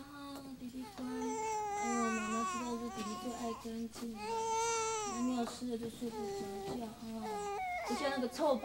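A baby crying in a string of long, wavering wails with short breaths between them.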